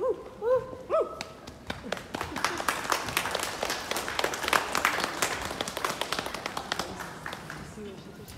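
Footsteps of several people walking on wooden floorboards, a dense irregular patter of knocks that builds and then thins out. A short voice sound comes just at the start.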